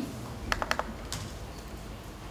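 Laptop keyboard keystrokes: a quick run of four key clicks about half a second in, then one more a moment later.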